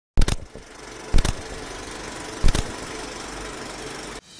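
Three sharp knocks, roughly a second apart, over a steady mechanical hum.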